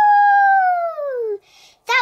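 A person's long, high-pitched "wheee", held steady and then falling in pitch before it stops about a second and a half in, voicing a doll going down a toy slide.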